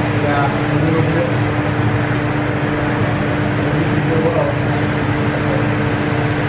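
A steady mechanical hum with an unchanging low tone, with faint voices underneath.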